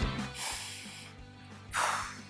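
Music fading out over the first half second, then a short audible breath drawn in near the end.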